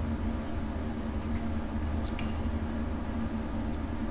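Steady low hum, with a few faint, short high chirps spaced a second or so apart, typical of house crickets kept as feeder insects.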